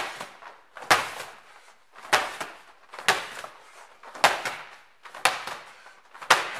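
Soft medicine ball thrown against a wall and caught on the rebound, over and over: six sharp hits about a second apart.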